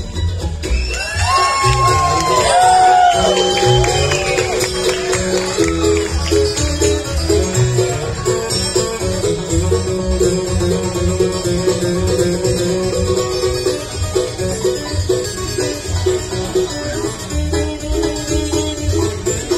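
Bluegrass band playing an instrumental break led by fast five-string banjo rolls, with upright bass, guitar and mandolin behind. High sliding notes sound over the music in the first few seconds.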